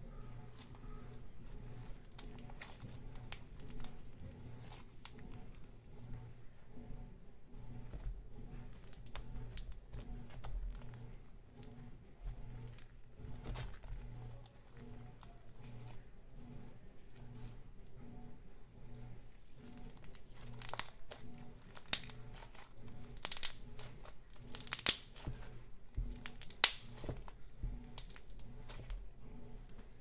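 Crunchy styrofoam slime being stretched and kneaded by hand: a crackling, crinkling run of small pops as the blended styrofoam bits in it are squeezed and pulled, louder in bursts in the last third.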